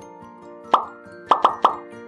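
Outro background music with four short cartoon-like pop sound effects: one about three-quarters of a second in, then three in quick succession near the end.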